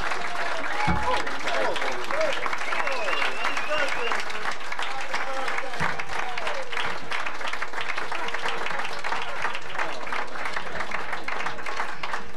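Audience applauding throughout, with voices calling out over the clapping during the first half or so.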